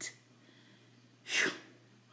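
A woman's single short, sharp burst of breath through the nose or mouth, about a second and a half in, like a sneeze or a scoffing puff of air.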